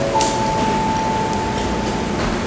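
Airport public-address chime: sustained tones stepping up in pitch, the highest held for nearly two seconds, the signal that a boarding announcement (here a final call) is about to start, over a steady hum of terminal background noise.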